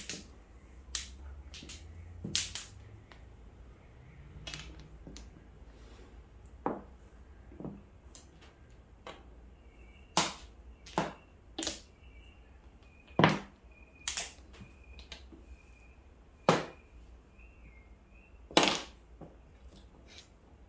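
Mahjong tiles clacking on a felt-covered table as players draw, arrange and discard them: sharp, irregular clicks, with a few louder clacks in the second half.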